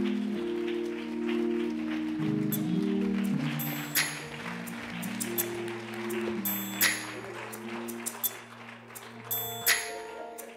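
Church organ playing slow, sustained chords over a long held bass note, with scattered applause and a few sharp claps standing out, about four, seven and ten seconds in.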